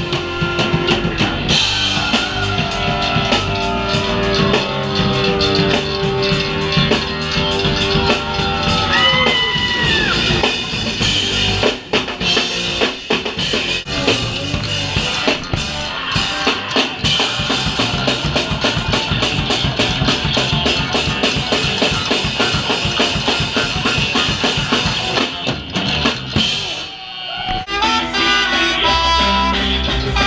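Live ska-punk band playing loud: a drum kit pounding out a fast beat under trumpet, trombone and electric guitar. Sliding horn-like lines fill the first stretch, and a long run of rapid drumming follows. Near the end the sound briefly drops away before the band comes back in.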